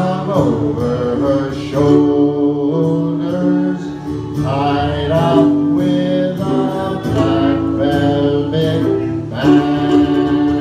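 A man singing an Irish folk ballad through a microphone and PA, with acoustic guitars strumming chords behind him.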